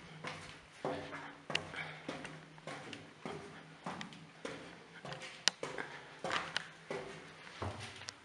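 Footsteps climbing steel chequer-plate stair treads: a string of knocks, one to two a second, each step setting the metal ringing briefly.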